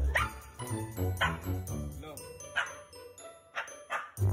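A Siberian husky vocalizing in four short calls about a second apart, over a backing music track.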